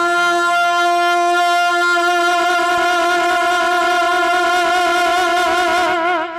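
A male naat reciter's voice holding one long, high sung note without a break, steady at first, with a wavering vibrato coming in near the end.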